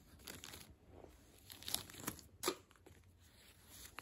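Clear plastic parts bag crinkling faintly as it is handled, in scattered short crackles, the sharpest about two and a half seconds in.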